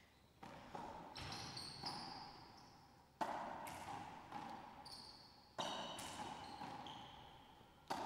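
Racquetball rally: the ball is struck by racquets and hits the court walls in a string of sharp, echoing cracks a second or two apart, each ringing on in the enclosed court. The rally is played as a ceiling-ball exchange.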